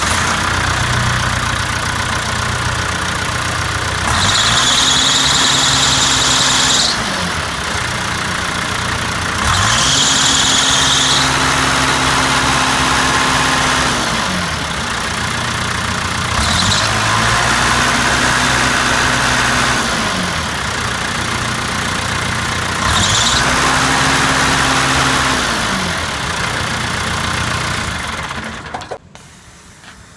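A John Deere diesel engine on a street sweeper runs and is revved up and back down four times. A high squeal sounds as the revs climb, long on the first two rises and brief on the last two.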